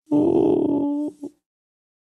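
A person's voice holding one long, even-pitched groan-like sound for about a second, then breaking off with a brief short sound.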